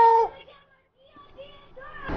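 A child's voice holds a drawn-out high note that breaks off about a quarter second in, followed by a short near-silent pause and faint voice sounds.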